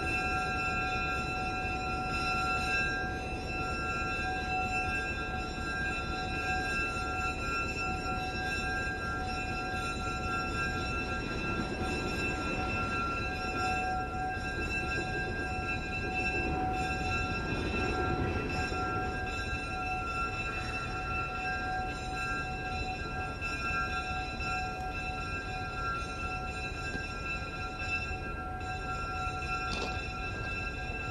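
Diesel switcher locomotive running at low throttle as it backs slowly toward a caboose to couple: a low engine rumble with a steady high whine over it, swelling a little in the middle.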